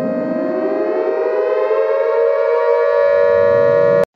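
Siren-like intro sound effect: a steady, dense held tone with a second tone sweeping slowly upward beneath it, swelling louder and cutting off abruptly at the end.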